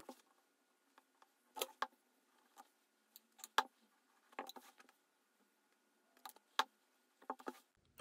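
A clothes iron handled over a folded fabric hem on a table, heard only as a few faint, short knocks and clicks scattered through otherwise near silence.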